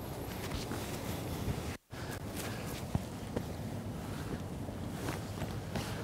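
Handling noise of a camping hammock: the fabric and mosquito net rustle as they are moved and sat into, with scattered footsteps on leaf litter, over a steady hiss of wind. The sound cuts out for a moment a little under two seconds in.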